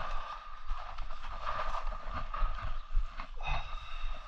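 Uneven wind buffeting on the microphone with light rubbing and handling noise as a paint pad is worked along the bars of a metal gate.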